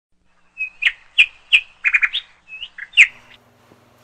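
A run of about eight quick bird chirps, some with sharp downward sweeps, stopping about three and a half seconds in.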